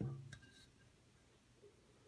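A knock as the steel M1917 helmet is set down on its stand, with a short ring from the metal and a second sharp click a moment later.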